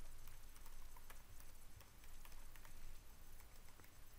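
Computer keyboard being typed on: a quick, irregular run of faint key clicks.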